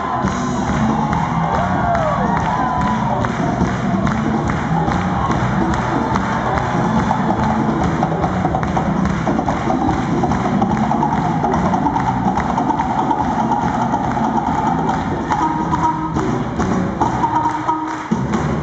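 Live band playing an upbeat, percussion-driven groove with congas and handclaps, loud and steady throughout.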